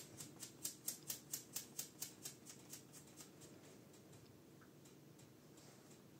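A small collar bell on a cat tinkling in quick, even ticks, about four a second, which die away about three seconds in.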